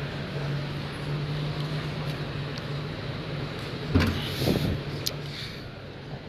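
Busy exhibition-hall ambience: a steady low hum under a haze of distant crowd noise, with a single thump about four seconds in.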